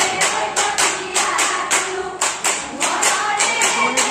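Jeng Bihu group song: women singing together over steady rhythmic hand clapping, about four claps a second.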